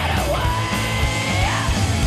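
Live garage rock band playing: a male singer yells one long held "yeah" over driving drums, bass and electric guitar, the note falling away past halfway.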